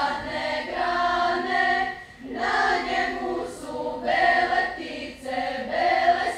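Girls' church choir singing, sustained notes in phrases with a short break about two seconds in.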